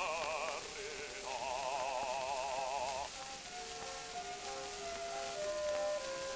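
Operatic bass voice singing held notes with a wide vibrato, stopping about three seconds in, after which the orchestra plays on alone in steady notes. It is an early acoustic recording played from a shellac 78 rpm disc, with steady surface hiss and faint crackle.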